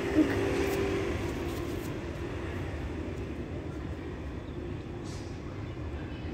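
Steady low background rumble with a faint hum that fades out over the first few seconds, and a single sharp click just after the start.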